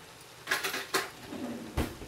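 A few sharp clinks and knocks of a utensil against the cooking pot, four short strokes spread across a couple of seconds.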